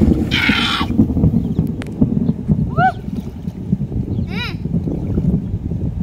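Water sloshing and splashing as hands grope through shallow muddy water for fish, with a burst of splashing about half a second in, over a steady rumble of wind on the microphone.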